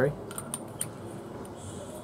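Light metallic clicks and taps of a mechanical vape mod and an 18650 battery being handled, a few separate small ticks.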